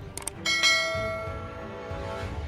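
Subscribe-button sound effect: a few quick mouse clicks, then about half a second in a struck bell chime that rings out and slowly fades.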